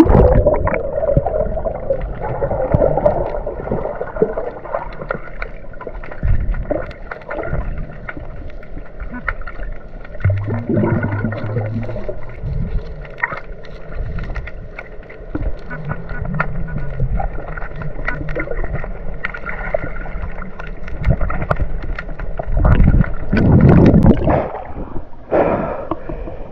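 Underwater sound from a camera submerged in shallow seawater: muffled churning and gurgling of stirred water, with scattered small clicks and knocks, and a louder rush of water near the end as it comes back up.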